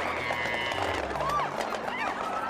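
Excited crowd commotion: scattered shouts and cries over a dense noisy haze as a group of people run about on pavement.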